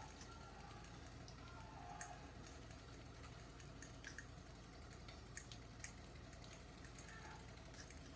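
Near silence, with a few faint, scattered clicks and squelches as fingers press mashed banana through a plastic strainer into a glass bowl.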